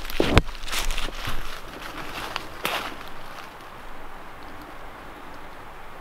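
Footsteps crunching and rustling through dry fallen leaves on a forest floor. They are busiest in the first three seconds and then give way to a fainter steady hiss.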